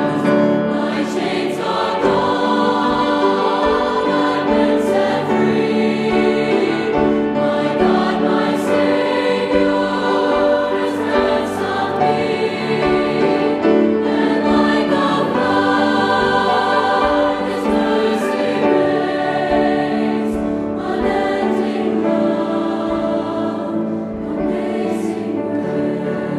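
Mixed choir of men's and women's voices singing in harmony, with long held chords.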